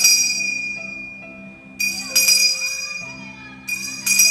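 Altar bell rung at the elevation of the consecrated host: pairs of ringing strikes come three times, near the start, about two seconds in and near the end, each ring fading out slowly.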